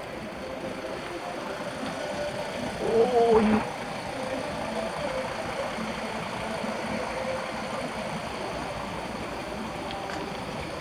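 A car engine idling close by, a steady low running sound, with a brief vocal exclamation about three seconds in.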